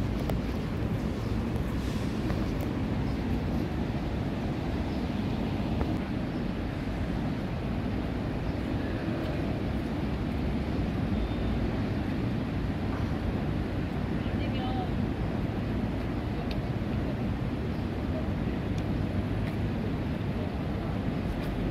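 Steady outdoor ambience: a low rumble of wind on the microphone over distant city traffic, with faint far-off voices now and then.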